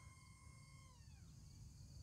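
Faint, distant whine of the RC jet's twin brushed motors and propellers. It holds steady, then falls in pitch about a second in as the throttle is pulled back to let it glide.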